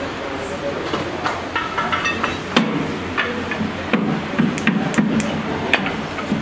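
Metal clinks and knocks as steel axle shafts are pushed into a differential's side gears: a string of sharp strikes, some with a brief metallic ring.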